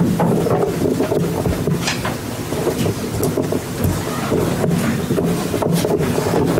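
Audience applauding: a dense spatter of claps.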